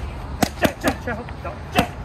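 Boxing gloves punching handheld red punch pads: three quick hits in a row about half a second in, then a single hit near the end.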